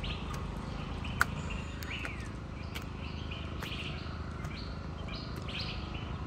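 Birds chirping: scattered short calls, with one falling call about two seconds in, over a steady low background noise. A single sharp click about a second in.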